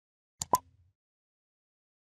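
A mouse-click sound effect for an on-screen like button being pressed: two quick clicks about half a second in, the second louder with a short pop-like tone.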